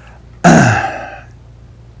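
A man clearing his throat once, about half a second in: a sudden harsh burst that drops in pitch and fades away over about a second.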